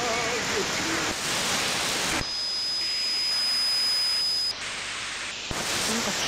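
Shortwave AM radio static from an RTL2832 SDR with upconverter, tuned across the 31-metre broadcast band; a broadcast voice trails off in the first half second. About two seconds in, the hiss drops abruptly and a steady high whistle holds for about two seconds. Near the end a click brings the loud hiss back as the receiver is retuned.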